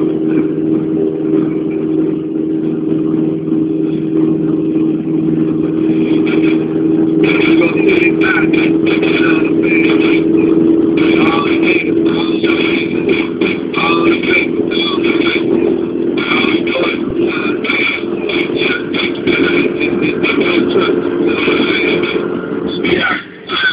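Mazda 323's 1.5-litre 16-valve four-cylinder engine and road noise, heard from inside the cabin at a steady cruise, with music playing on the car stereo. From about seven seconds in the music's rhythmic beat comes through more strongly.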